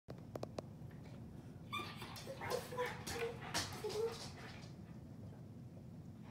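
Light rain falling steadily, with a run of short whining animal cries from about two seconds in to nearly five seconds, and a few sharp clicks right at the start.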